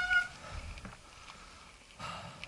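Mountain bike disc brake squealing briefly as the rider slows, one steady high-pitched note with overtones that dies out about a third of a second in, followed by tyres rolling over gravel.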